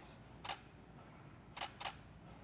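Camera shutter firing: one click about half a second in, then two quick clicks close together near the end.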